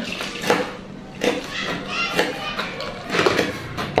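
Untranscribed voices in the background, a child's among them, with a few light knocks.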